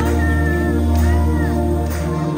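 Live band playing a slow number with a steady low bass. Over it a high melodic line holds one note, then rises and falls in an arch near the end.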